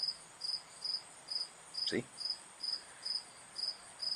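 A cricket chirping steadily, short high-pitched chirps at a little over two a second.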